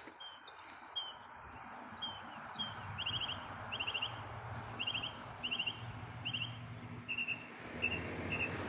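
A small songbird calling over and over, short high chirps and quick trilled notes repeated about every half second, over the steady sound of road traffic that builds as a car approaches.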